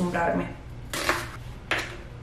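Kitchen knife chopping an onion on a plastic cutting board: two sharp chops, about a second in and again near the end.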